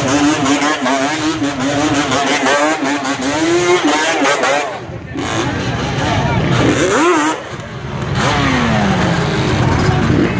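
Quad (ATV) engines revving amid a talking, shouting crowd. One engine is held at steady high revs for the first few seconds, revs climb briefly about seven seconds in, and an engine note falls as a quad passes close near the end.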